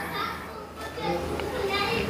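Faint children's voices in the background, chattering in short scattered bits, over a low steady hum.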